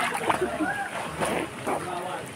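Pool water splashing as people move and play in it, with voices mixed in.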